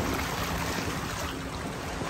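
Seawater splashing and sloshing around a person who has just fallen backwards into shallow water, a steady wash of noise that eases slightly.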